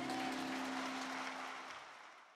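Congregation applauding after a solo song while the accompaniment's last sustained note dies away. The applause fades away over the last half second.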